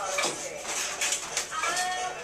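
A young woman singing in a high, sliding voice, with a falling glide near the start and a rising one near the end.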